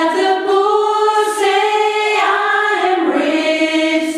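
Small choir of mostly women's voices singing one continuous phrase at rehearsal, the held notes stepping to a new pitch several times.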